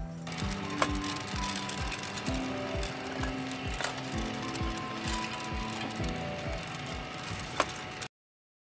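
Background music with a steady beat over the steady whirring of a Gene Cafe coffee roaster, its rotating drum tumbling coffee beans as they roast. Two sharp clicks, one about a second in and one near the end.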